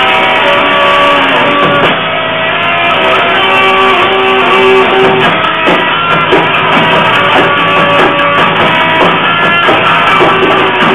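Electric guitar played live through an amplifier, with loud held notes and chords running without a break.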